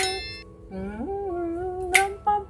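A man humming a melody: his voice slides up about two-thirds of a second in and holds a wavering note. A bright chime fades out at the start.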